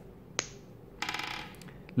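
Hard plastic ball-and-stick molecular model pieces clicking as an atom is pulled off its plastic bond stick: one sharp click, then a brief rapid rattle about a second in, and a small click near the end.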